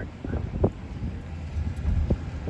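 Low, steady rumble of a vehicle driving slowly, heard from inside the cabin.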